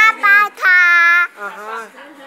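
A little girl's high voice in sing-song calls: a few short syllables, then one long held note of under a second.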